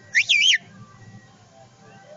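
A short, high whistled call whose pitch rises and falls twice in under half a second, then a faint low steady hum.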